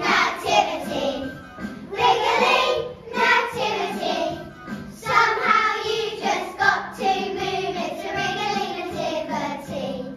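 A group of young children singing together, in short phrases with brief breaths between them.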